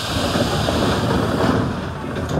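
Loud hiss of compressed air venting from a subway train's pneumatic system, with a low rumble under it, dying away near the end.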